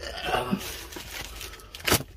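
Bulb packet being torn open by hand: rustling and crinkling, with one loud sharp rip just before the end.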